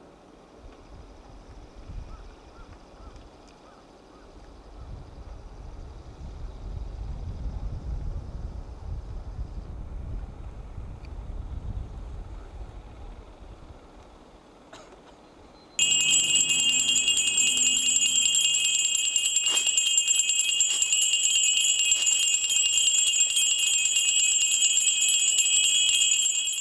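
Low wind rumble on the microphone, swelling and fading. About sixteen seconds in it cuts suddenly to loud, steady jingling of many small bells carried by hadaka-mairi pilgrims as they walk in procession.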